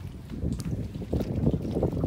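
Wind rumbling on the microphone, with water lapping faintly around the jetty pilings.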